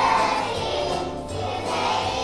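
A group of young children singing together in unison over instrumental accompaniment with steady low notes.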